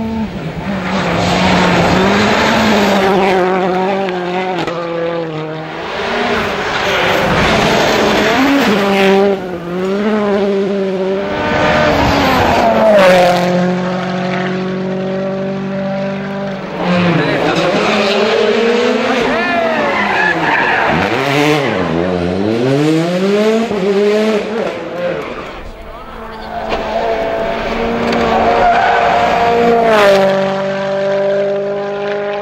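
Rally cars at speed on a gravel stage, engines revving hard and repeatedly rising and falling in pitch through gear changes, with a deep swoop of downshifting and braking partway through and loose gravel being sprayed.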